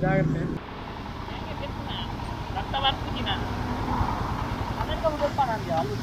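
Steady low rumble of roadside traffic, with short snatches of people talking.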